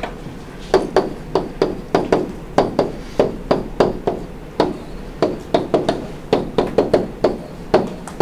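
A stylus tapping and dragging on a pen display or tablet while words are handwritten: a quick, irregular series of light knocks, about three a second, starting about a second in.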